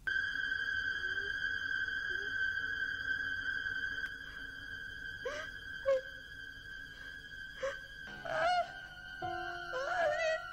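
Horror film score: a sudden loud, high held note that sustains, with short sharp stabs, some bending in pitch, breaking in over it in the second half.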